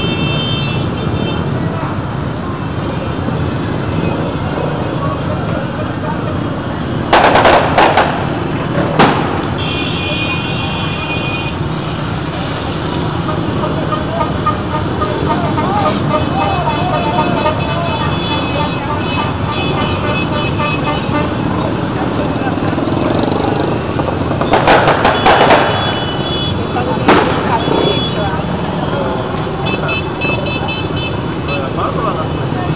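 A dense crowd of bicycles and motorcycles rolling past, with voices, motorcycle engines and repeated horn toots. Loud, sharp bangs come in a cluster about seven to nine seconds in and again about twenty-five to twenty-seven seconds in.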